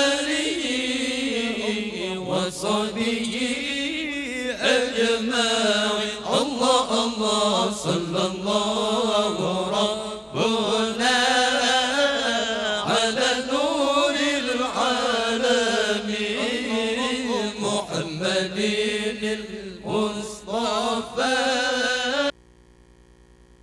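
A man's solo Quran recitation in the melodic tilawah style, sung into a microphone with long held notes that wind up and down in ornamented runs.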